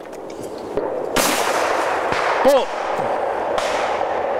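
A shotgun report from elsewhere on the clay range about a second in, its echo rolling on for about two seconds. A shouted call is heard midway through.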